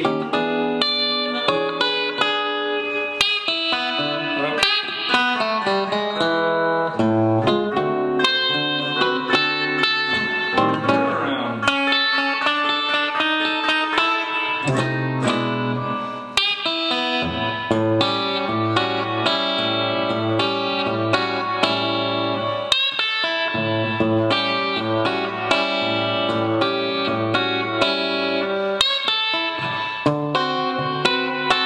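Solo blues guitar played on an archtop hollow-body electric guitar: bass notes and chords mixed with single-note pentatonic riffs. It includes a blues turnaround, F7 to E7, midway through.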